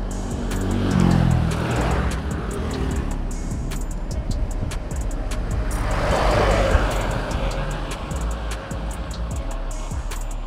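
Background music with a steady beat, with motor vehicles passing on the road twice: once about a second in, its pitch falling as it goes by, and again around six seconds in.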